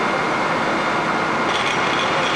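A building fire burning behind a barred window: a loud, steady rushing noise.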